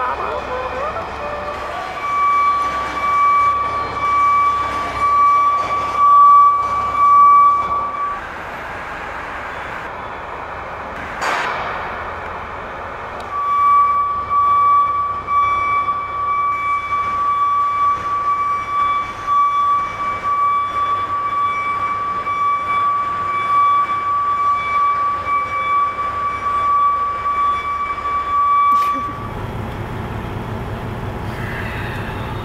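A steady, high-pitched electronic warning tone sounds for about six seconds, stops, then sounds again for about fifteen seconds. A short sharp hiss comes in the gap between the two tones.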